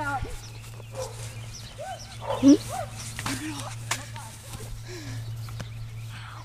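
Children's short yelps and shouts during a foam pool-noodle fight, with a couple of sharp smacks of noodle hits after about three seconds and a laugh near the end.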